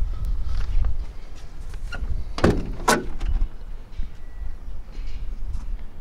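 Steel door of a 1932 Ford five-window coupe being opened: two sharp latch clicks about half a second apart near the middle, over a low rumble.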